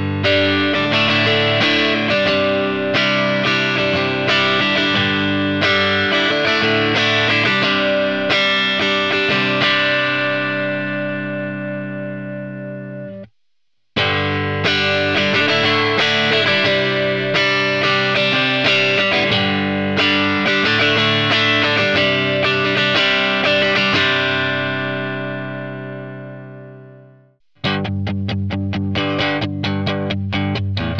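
Electric guitar played with a pick, a run of chords and picked notes, first with a standard pick and then, after a brief silence about halfway through, the same kind of passage with a three-pointed Dragon's Heart pick for comparison. Each take fades out at its end, and a quicker picked passage starts near the end.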